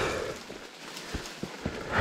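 Fallen branches and dead wood being handled on a leafy forest trail: a few faint, scattered knocks and rustles.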